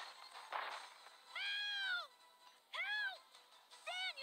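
Three swooping electronic tones, each gliding up and then down in pitch, coming about a second apart on a film soundtrack, with a short burst of noise just before the first.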